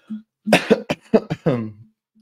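A man coughing: a quick run of several sharp coughs starting about half a second in, the last one drawn out into a voiced tail.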